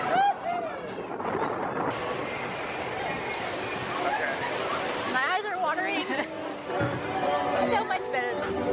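Riders screaming and whooping on a mine-train roller coaster, over the steady rush of the moving train. There is a burst of screams at the start and another about five seconds in.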